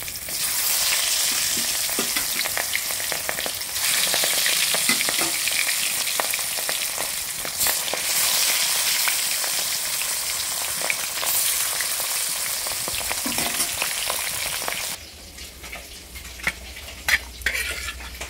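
Fish pieces shallow-frying in oil in an aluminium wok: a steady sizzle with fine crackling pops, the pieces being moved and turned with a metal spoon. The sizzle cuts off suddenly about fifteen seconds in, leaving a quieter background with a few small knocks.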